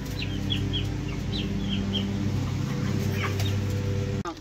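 Young Cornish Rock broiler chickens peeping, a series of short high chirps that come most often in the first two seconds, over a steady low electrical hum.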